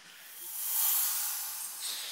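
A rushing hiss that swells over the first second and then slowly fades.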